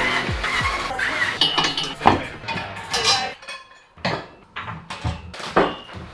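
Cordless drill-driver whirring in short bursts as it backs screws out of a white flat-pack furniture panel, with sharp knocks as the panels are handled. Background music with a beat runs underneath.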